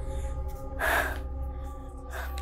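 A woman's short, sharp intake of breath about a second in, over a held, sustained drone of background music.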